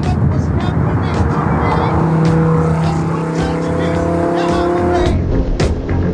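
Car engines running on the road with tyre and wind noise, including a steady held engine note through the middle, with background music under it; about five seconds in the car sound cuts away and the music takes over.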